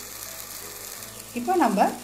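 Prawn masala frying in the pan with a steady sizzle. A voice speaks briefly near the end.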